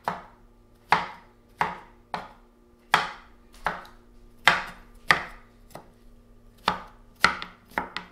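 Chef's knife chopping soft eggplant flesh on a wooden cutting board: sharp knocks of the blade striking the board, about one and a half a second, coming a little faster near the end.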